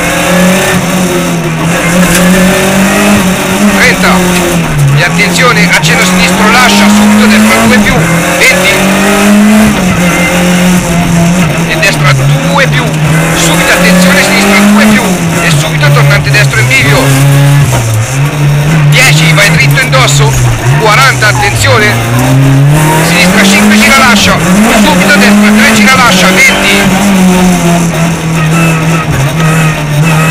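Rally car's engine heard from inside the cabin under hard driving, the revs climbing and dropping over and over through gear changes.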